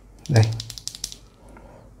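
A single loose E-DRA red linear mechanical keyboard switch pressed by hand, a quick run of light clicks as the stem snaps down and back about half a second in. The spring gives no ping.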